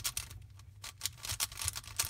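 A Megaminx twisty puzzle's plastic faces being turned by hand in quick succession, giving an irregular run of sharp plastic clicks and clacks as a move sequence is repeated.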